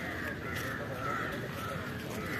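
Crows cawing, a run of harsh caws about two a second.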